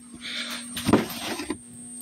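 Steady electrical hum from a heavily loaded transformer inverter, with a short rustle and a knock about a second in as the phone is moved.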